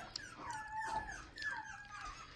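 Puppies whining in the background: a string of about four thin whines, each falling in pitch. They are puppies wanting attention.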